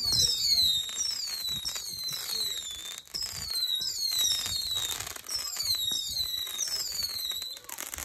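Whistling fireworks going off in a rapid string: many overlapping shrill whistles, each falling in pitch, over crackling, cutting off suddenly just before the end.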